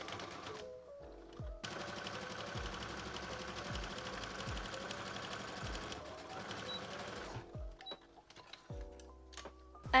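Brother XR3340 computerized sewing machine running steadily at stitching speed through thick quilted fabric, with the stitch length turned up to 3.5 to ease the load. It starts about a second and a half in and stops a little past halfway, then goes quiet. Soft background music plays under it.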